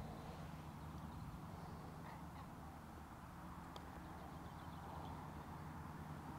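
Quiet open-air ambience: a steady low hum with faint bird calls, including a short run of quick chirps about four seconds in.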